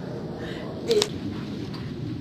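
A single sharp click or crack about a second in, over steady background noise.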